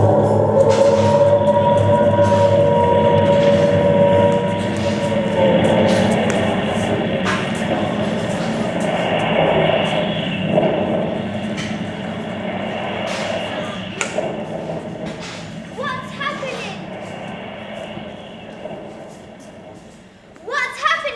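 A recorded soundtrack played through a hall's speakers: a held chord of steady tones for the first few seconds, then a wash of sound that slowly fades, with scattered knocks. A child's voice is heard briefly near the end.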